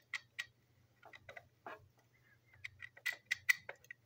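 A metal screwdriver turning a small screw in a plastic toy train tender, giving irregular small clicks and scrapes in clusters as the tip works in the screw head.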